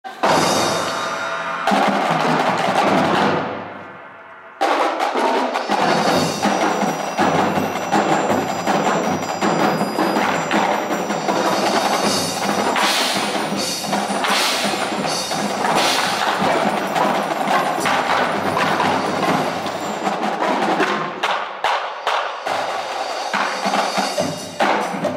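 Indoor drumline playing: marching snare, tenor and bass drums with a front ensemble of mallet percussion. A loud hit dies away over about two seconds, then the full line comes back in suddenly and plays on in a dense, fast pattern.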